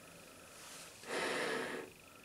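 Breathing through a British Light Anti-Gas Respirator and its canister filter: a faint breath about half a second in, then a stronger rushing breath lasting under a second, about a second in.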